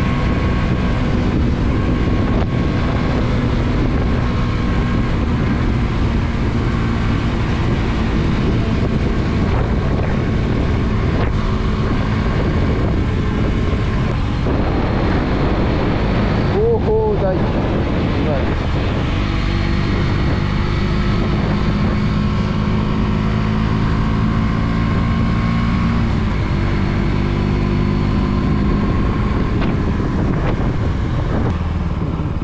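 A motor vehicle's engine running steadily on the move, with road and wind noise on the microphone. About halfway through a brief wavering tone sounds over it.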